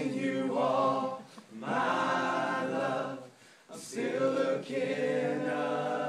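A group of men singing a cappella in close harmony, in long held phrases with short breaths between them, about a second and a half in and again near four seconds.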